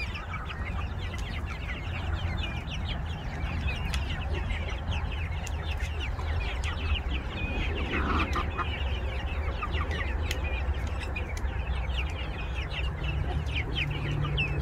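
A flock of young chickens clucking in many short, quick calls while feeding on corn, with many sharp taps of beaks pecking at the grain and the plastic bucket. A steady low rumble runs underneath.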